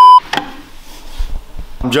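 A loud, steady test-tone beep, the kind that goes with TV colour bars, cutting off sharply just after the start. A single click follows, then quiet room tone until a man starts speaking near the end.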